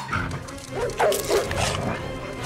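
Dogs barking several times in quick succession over background film music.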